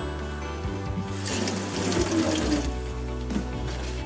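Background music, with a rush of pouring or running water about a second in that lasts about a second and a half.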